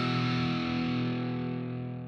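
Outro music: an electric guitar with distortion holding a chord, with a wavering high note on top, fading out toward the end.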